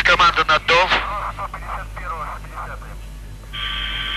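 Voice chatter over a launch-control radio link, loud at first and then fainter. About three and a half seconds in, a steady electronic tone starts on the channel and holds.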